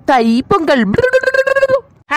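A high-pitched cartoon character voice: a swooping cry in the first half second, then one note held for most of a second.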